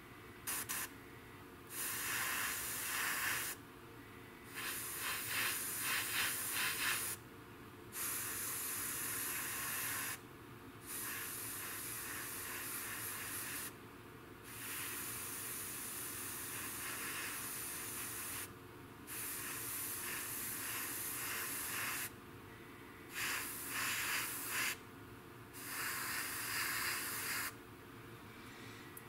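Airbrush spraying a semi-gloss clear coat over small model parts, a hiss in about eight bursts of one to four seconds each, with short pauses as the trigger is released between passes.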